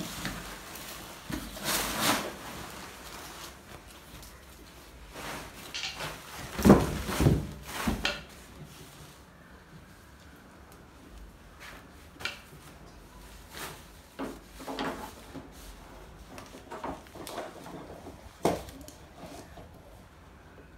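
Thin plastic wrapping rustling and crinkling as a flat-screen TV is pulled from its packaging, with a cluster of loud knocks and bumps from handling the panel about six to eight seconds in. Scattered light taps and clicks follow, with one sharper knock near the end.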